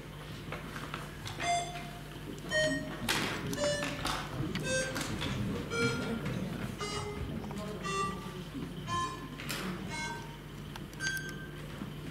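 About twenty short electronic beeps at varying pitches, one after another every half-second or so, from the voting devices as council members cast an electronic vote. Under them are a steady low hum and faint murmur in the hall.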